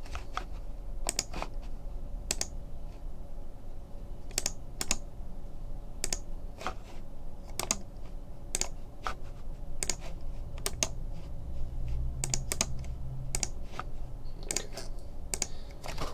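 Computer keyboard being typed on: single keystrokes and short runs of key clicks at an irregular pace, over a low steady hum.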